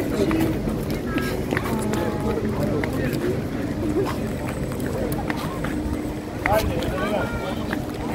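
Chatter of several people talking around the microphone in a busy street, overlapping voices with no single clear speaker. A steady low hum comes in about halfway through and runs under the voices.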